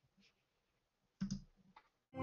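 Near silence broken by a quick double click a little over a second in.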